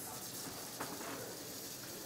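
Kitchen tap running water into a stockpot at the sink, a steady hiss.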